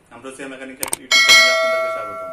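Subscribe-button sound effect: a quick double mouse click, then a bright bell chime that strikes about a second in and rings on, slowly fading.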